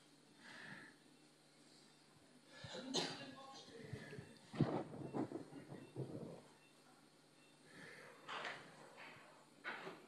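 Faint, indistinct voices with a few clicks and knocks, busiest from about three to six seconds in.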